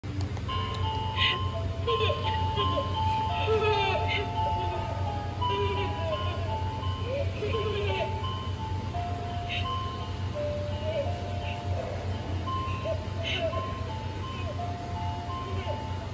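Sound track of a 'Creepy Boy' Halloween animatronic: a slow chiming melody of short held notes, with a child's voice over it and a steady low hum beneath.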